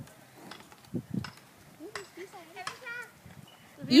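Cattle eating close by at a fence: two short crunching or tearing sounds about a second in, with faint, unclear voices murmuring in the second half.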